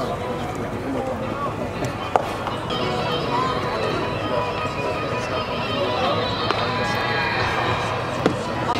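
Indistinct ballpark voices and music, with one sharp pop about two seconds in as a pitched baseball lands in the catcher's mitt.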